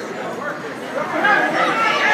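Crowd of spectators talking and calling out in many overlapping voices, growing louder about a second in.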